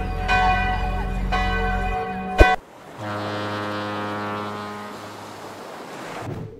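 Church bells ringing, struck about once a second, cut off by a sharp click about two and a half seconds in; then a long, steady low tone of several notes at once that slowly fades.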